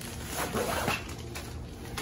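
A zipper being pulled open on the zippered packaging pouch of a folding fabric laundry hamper, with the packaging rustling.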